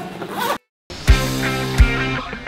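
A zipper being pulled shut on a soft insulated meal-prep bag, in a quick rising sweep. It cuts off abruptly, and after a moment of silence music starts with a strong, steady kick drum.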